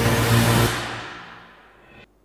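News-show theme music at its close, loud until about two-thirds of a second in, then dying away over about a second to near silence.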